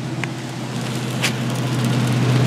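Cabin noise in a vehicle driving on a wet road: a steady low engine drone with an even hiss of tyres and rain, and two light clicks as the camera is turned around.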